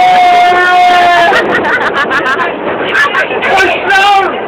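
Loud voices: one long held high note that drops off about a second in, then excited overlapping talk and shouting.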